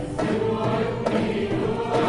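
A choir singing an Arabic song with an Arab music ensemble of violins, cello and oud accompanying. The voices come in at the start, after an instrumental phrase.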